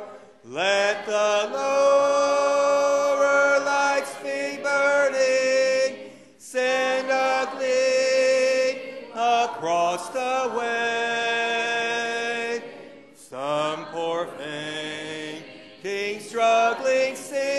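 A church congregation singing a hymn a cappella, voices only, in long held phrases with short pauses between them.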